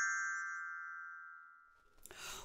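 A children's glockenspiel with coloured metal bars, struck once just before, ringing with several clear tones together and fading out over about two seconds: the book's cue to turn the page.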